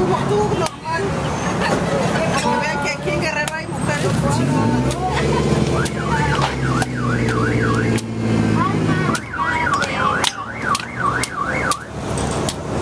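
Machete chopping into a green coconut on a wooden stump, sharp chops coming irregularly and bunching up near the end. Over street traffic hum, a warbling electronic siren or alarm rises and falls rapidly through the second half.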